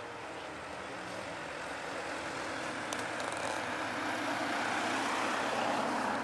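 Lancia Delta HF Integrale Evo's turbocharged four-cylinder engine running hard, growing steadily louder as the car approaches and loudest near the end.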